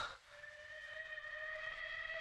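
Film background score: a held chord of several steady tones swelling in from about half a second in and slowly growing louder, after a short, louder sound right at the start.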